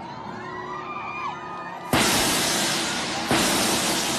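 Large hammered brass gong struck twice with a padded mallet, about a second and a half apart, each stroke a sudden loud crash that rings and slowly dies away.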